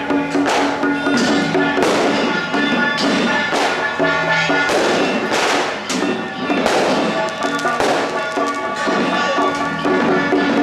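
Loud temple procession band music: a held, droning melody over repeated percussion crashes about once a second.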